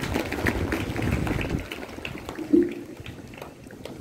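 Audience applause: many hands clapping quickly and thickly at first, thinning out after about a second and a half.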